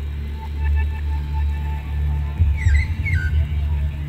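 The heartbeat sound installation's speakers playing a deep, slow bass throb that swells and fades every couple of seconds, with short high chirps over it. About two and a half seconds in, an uneven low rumble runs for about a second.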